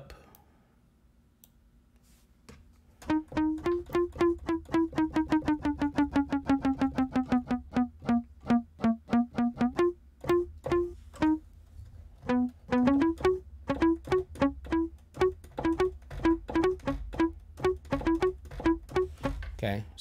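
Software bass guitar (Cakewalk SI Bass Guitar 2, muted 'crunchy mute' sound) playing short plucked notes. After a quiet start, a quick run of repeated notes, about five a second, slips gradually lower in pitch. It then turns into a line of separate notes moving up and down.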